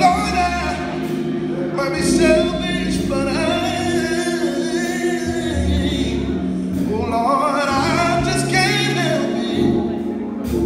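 Male gospel singer singing live into a microphone, with gliding, drawn-out vocal lines over a band's held chords and deep bass notes.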